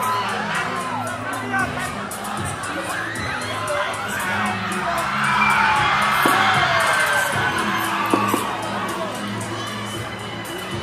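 A large crowd of students cheering and screaming, many voices shouting over one another, over music with a steady beat. The cheering swells loudest about halfway through.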